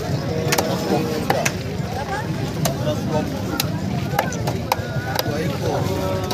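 Machete chopping fish on a wooden chopping block: a series of sharp knocks at irregular intervals as the blade cuts through flesh and bone.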